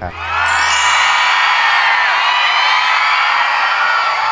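Studio audience cheering and whooping, many high voices at once. It bursts out just after the start and stays loud and steady throughout.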